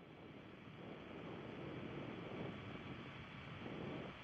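Faint, distant noise of the Soyuz-FG rocket's engines in first-stage flight: a steady rushing roar with no distinct tones, slowly growing louder.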